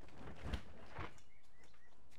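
Hands brushing and pressing loose potting soil in a bucket, a soft scuffing about half a second in and again a second in, with faint bird chirps in the background.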